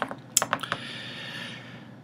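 Computer keys clicking: a quick run of five or six taps in the first second, then a faint steady hiss.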